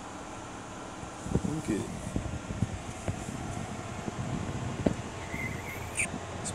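Steady whir of a grow-tent ventilation fan, with a few faint murmured words and light handling knocks.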